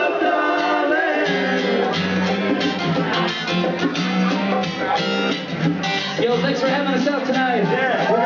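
Live acoustic reggae band playing: strummed acoustic guitars with bongo strikes and voices singing. A low bass line comes in about a second in, and the drum strikes keep an even beat through the rest.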